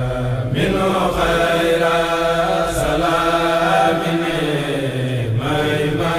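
Men chanting a Mouride khassida (Arabic devotional poem) with no instruments, in long, drawn-out melodic phrases. Breath breaks fall about half a second in and again near the end.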